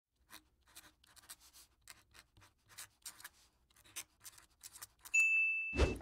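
Faint marker-writing sounds in short, irregular scratchy strokes, then a single high ding about five seconds in that rings for under a second.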